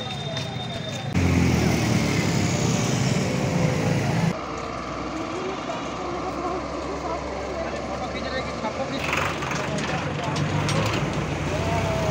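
Street sound picked up on the camera microphone: a steady noise of road traffic and engines with indistinct voices in the background. It changes abruptly several times, loudest with a heavy low rumble between about one and four seconds in.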